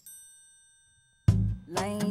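The band stops dead and a single bell-like chime rings out alone, fading away over about a second. After a brief silence the full band crashes back in with drums, bass and singing about a second and a quarter in.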